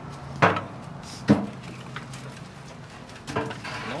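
Two sharp wooden knocks about a second apart as firewood is handled and pushed into the firebox of a small wood-burning stove.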